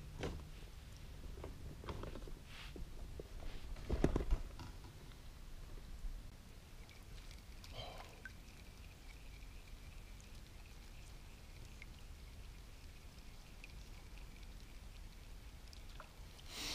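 Quiet handling noises on a kayak: scattered light knocks, with one louder low thump about four seconds in.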